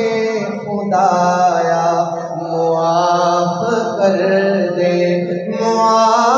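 A man singing a naat (an Urdu devotional poem) solo in long, drawn-out held notes whose pitch bends slowly.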